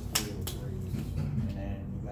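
Two sharp clicks, about a third of a second apart, from a thin plastic water bottle crackling as it is drunk from.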